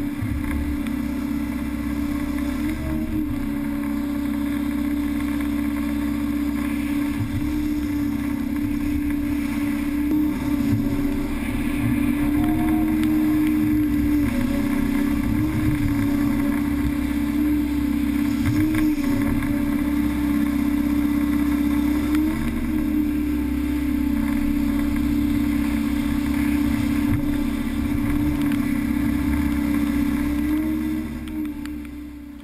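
Excavator engine and hydraulics running steadily, heard from inside the cab. The tone rises briefly several times as the hydraulics take load, swinging and tilting the gravel-spreading bucket.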